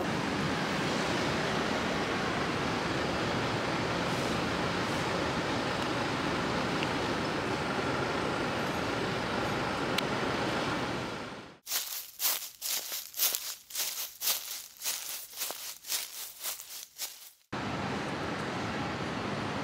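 Steady city street noise with traffic, an even wash without words. About eleven and a half seconds in it cuts abruptly to a run of sharp, irregular crackling strokes with no low rumble, lasting about six seconds, then the street noise returns.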